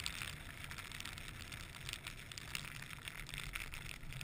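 Wind rumbling on the camera's microphone during a chairlift ride in blowing snow, with a steady crackle of small ticks over it.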